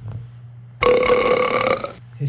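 A single gassy, burp-like noise about a second long, held at one pitch, starting about a second in. It sounds over a low steady hum.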